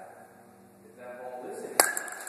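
A youth baseball bat striking a baseball off a batting tee: one sharp crack near the end.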